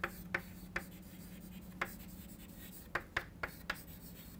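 Chalk writing on a blackboard: short, irregular taps and scratches as letters are formed, several in quick succession near the end, over a steady low hum.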